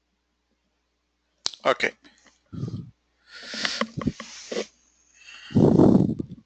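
A man's voice close to the microphone: a short 'okay' about one and a half seconds in, then further brief, indistinct vocal sounds, the loudest near the end.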